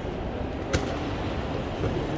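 Airport terminal hall ambience: a steady wash of background noise with faint distant voices, and one sharp click about three quarters of a second in.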